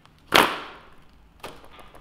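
A folding hand fan flicked open: one loud, sharp snap with a short fading tail about a third of a second in, then a fainter click about a second and a half in.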